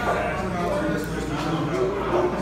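Background chatter of diners talking in a small restaurant, indistinct voices over a steady room hum.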